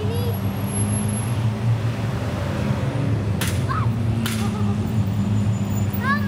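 Lamborghini engines idling with a steady low drone. Two sharp cracks come a little under a second apart, midway through.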